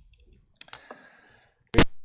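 A few faint clicks in the first second, then one loud, sharp click near the end.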